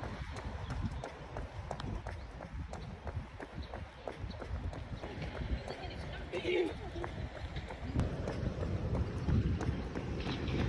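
Footsteps of a man jogging on a paved path.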